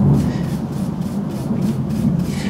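Bristles of a paintbrush sweeping dust off the jack and XLR connector panel of a mixing console: quick repeated scratchy strokes over a low steady hum.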